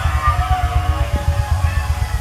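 Live church band music: a fast run of low drum and bass hits with a few held keyboard notes above.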